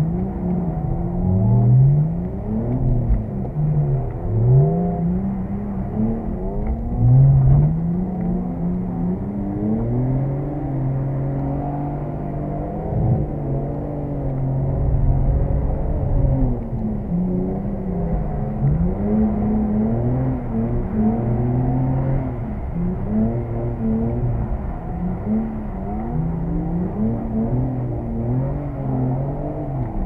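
BMW 330's straight-six engine heard from inside the cabin while drifting, the revs rising and falling over and over as the throttle is worked, with a few short stretches held steady.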